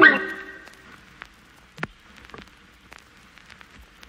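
Background music stops right at the start, its last notes dying away within half a second. Then come faint, scattered clicks and taps of hands handling a smartphone with a plastic back; the clearest is a little under two seconds in.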